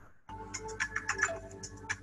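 Background music of a Quizizz live game: a light, chiming electronic tune with a steady beat, coming back in after a brief gap at the start.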